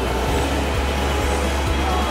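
Surf surging and washing through a rocky gully, a steady rush of white water, with low bass notes of background music underneath.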